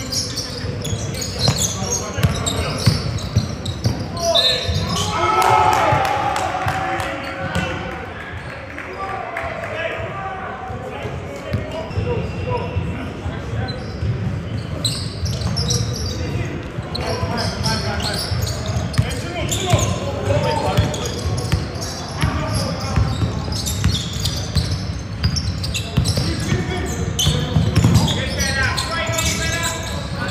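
A basketball bouncing on a wooden court floor again and again during play, with players' and coaches' shouts echoing in a large sports hall.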